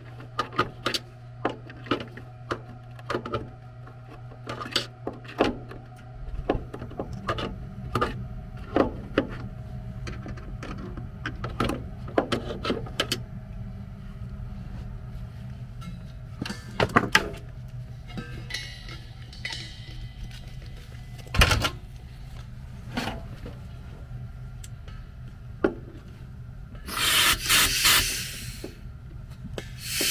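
A run of sharp clicks and knocks from pliers and fittings being worked on a furnace's vent and condensate drain connections. Near the end comes a short, loud hiss of compressed nitrogen blown into the blocked condensate drain line to clear it.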